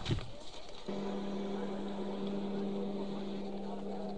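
A brief knock at the start, then a steady low hum that begins about a second in and holds one pitch. It is the audio of a TV news clip starting to play, heard through computer speakers.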